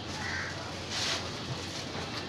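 A crow cawing: two short, harsh calls over a low steady hum.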